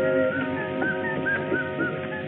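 Old film soundtrack music: held notes stop just after the start, followed by a run of short, repeated whistle-like chirps, about three or four a second.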